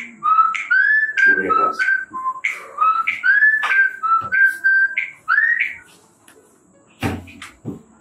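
Mobile phone ringtone: a melody of short notes, many sliding up or down in pitch, playing for about five and a half seconds and then stopping.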